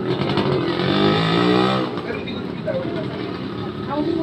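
A motor vehicle engine goes by, rising slightly in pitch and loudest in the first half before it cuts away just before two seconds in. People are talking around it.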